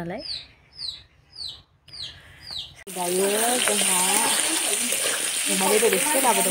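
A bird chirping over and over, a short high falling chirp about twice a second. About three seconds in, this cuts to the loud, steady sizzle of potatoes and meat frying in oil in a wok, stirred with a spatula.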